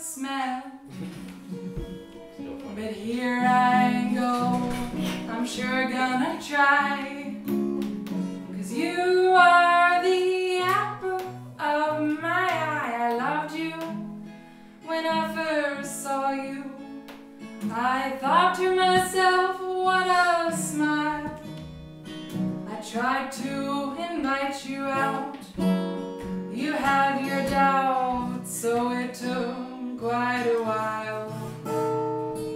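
A woman singing a folk song, accompanying herself on acoustic guitar. She sings in phrases with short gaps between lines while the guitar keeps playing underneath.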